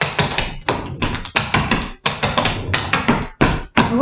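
Clogging shoe taps striking a hard floor in quick runs of strikes, broken by short gaps about every second and a half, as the dancer does triple steps backing up.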